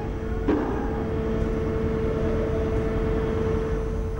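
Fire brigade vehicle engines and pumps running at a building fire: a steady rumble with a constant whine and a single knock about half a second in.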